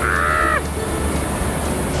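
A man's short, high-pitched yell lasting about half a second, followed by a steady rushing background.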